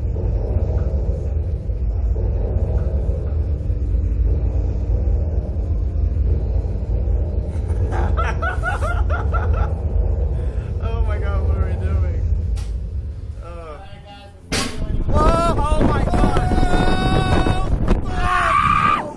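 Steady low rumble with bits of voices and laughter while the riders wait in the slingshot ride. About fourteen and a half seconds in, a sudden loud onset as the ride launches, then the riders yelling and screaming over the rush of wind.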